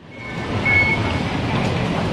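Steady ambient noise of a busy indoor walkway, rising from silence over the first half second, with a short high electronic beep near the middle.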